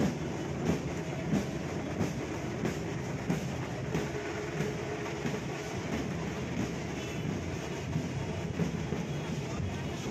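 Procession drums beating a steady rhythm, about three strokes every two seconds, over a dense crowd hubbub.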